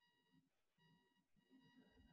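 Near silence: room tone with a very faint high tone that breaks off and comes back a few times.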